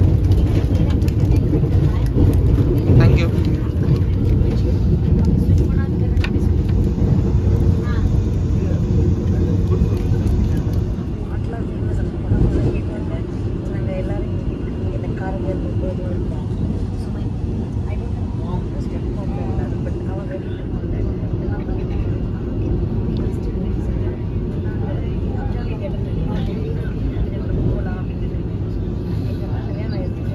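Vande Bharat Express electric multiple unit running at speed, heard inside the passenger coach: a steady low rumble, with indistinct passenger voices in the background.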